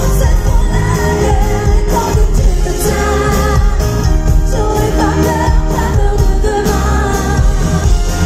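Live band music: a woman singing lead into a microphone over electric guitar and a steady bass and drum beat, loud throughout.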